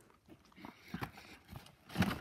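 Faint chewing and mouth noises from eating a donut: a few soft, scattered clicks and smacks.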